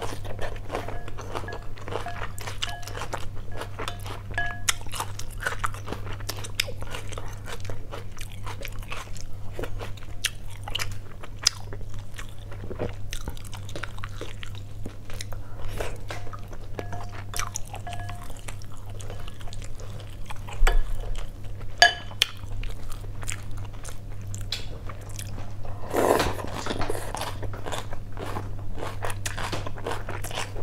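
Close-miked eating of rice noodle soup: a steady run of small wet mouth clicks and chewing sounds over a steady low hum. A few sharper clicks come about two-thirds through, and a louder, longer mouth sound near the end.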